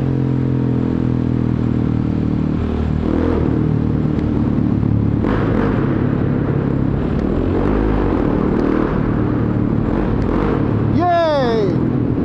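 Motorcycle engine running at cruising speed, with road and wind noise on a helmet camera, heard inside a road tunnel. Near the end there is a short pitched sound that falls in pitch.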